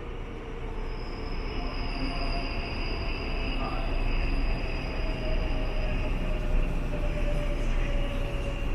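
Subway train running on the track in an underground station: a steady rumble that grows louder over the first few seconds, with thin, high squealing tones from the wheels held for several seconds.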